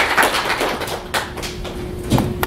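Audience applauding, the clapping thinning out into a few scattered claps.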